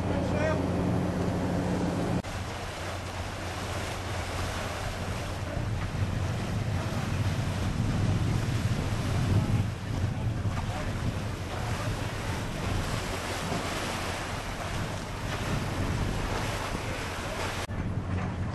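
Wind buffeting the microphone over the rush of water from a steamship underway. For about the first two seconds there is instead a steady low hum, which cuts off suddenly.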